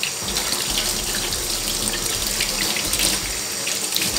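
Kitchen tap running in a steady stream, shut off near the end.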